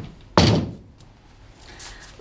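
A single loud thud about half a second in, sharp at the onset and dying away quickly, with a fainter click just before it.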